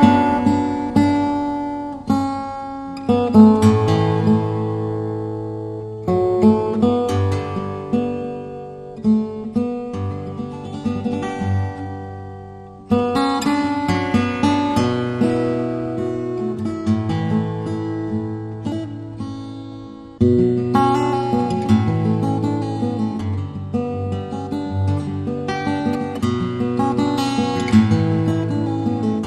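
Instrumental acoustic guitar music, with plucked notes and chords ringing out over a bass line at a gentle pace.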